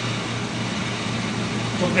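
A steady low hum with an even hiss underneath, running without change through a pause in speech; a man's voice starts again near the end.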